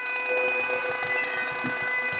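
Highland bagpipes holding one long, steady note over the drones.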